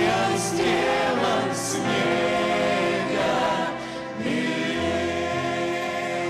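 A choir singing a hymn, with long held notes.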